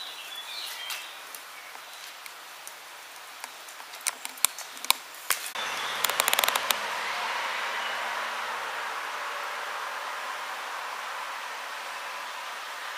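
Samoyed puppies scuffling on a hard floor, with scattered clicks and taps of claws. About halfway through there is a quick run of rapid clicks, then a steady background hiss.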